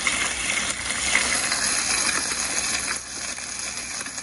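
Bacon sizzling in a frying pan: a steady crackling hiss full of small sharp pops, easing slightly after about three seconds.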